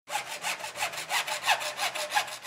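Hacksaw cutting through a PVC drain pipe in quick, even strokes, about three a second.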